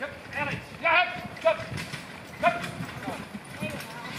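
Single horse and marathon carriage going fast past the camera: uneven hoofbeats and wheels on the sandy track. Loud shouted calls cut in about a second in, again half a second later and once more near the middle, and these are the loudest sounds.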